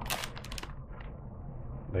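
Plastic crisp packet crinkling in a quick run of sharp crackles as a hand reaches in and pulls out a crisp, followed by a single fainter click about a second in.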